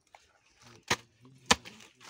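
A hoe's blade chopping into wet, muddy earth: two sharp strikes about half a second apart, the second one louder.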